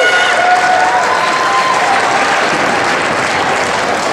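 Audience applauding in a large hall, with a few voices calling out over the clapping in the first couple of seconds.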